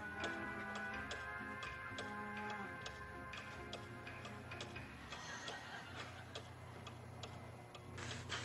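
Repeated light ticking over soft held music notes that fade away partway through.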